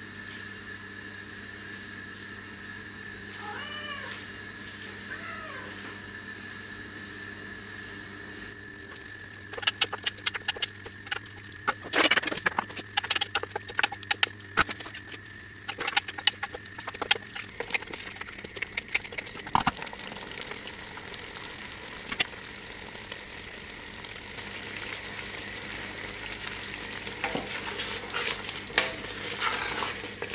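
Diced plums cooking down in a stainless steel jam pan, stirred with a wooden spoon that scrapes and knocks against the pan from about ten seconds in. The cooking sizzle grows toward the end. Two short wavering pitched calls sound about four to five seconds in.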